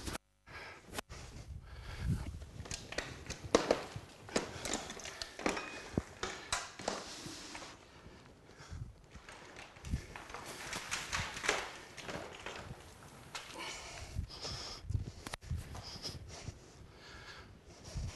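Footsteps and scattered knocks and rustles from someone moving about and handling things, irregular and with no steady rhythm.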